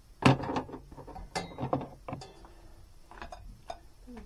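Kitchenware clattering: a few separate sharp knocks and scrapes of a utensil against a bowl and pot as cooked rice is served.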